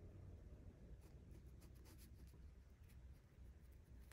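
Faint, short scratching strokes of a fine paintbrush laying gouache on paper, over a low steady room hum.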